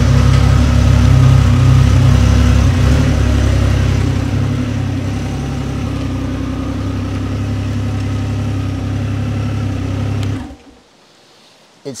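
Triumph Rocket 3's 2.5-litre three-cylinder engine running, louder for the first few seconds and then idling steadily, before it stops abruptly near the end.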